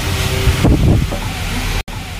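Rushing noise with low rumbles, like a phone's microphone being rubbed and buffeted as the phone is moved about. It breaks off abruptly just before the end.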